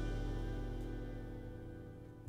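A jazz combo's final chord ringing out, held tones slowly fading away.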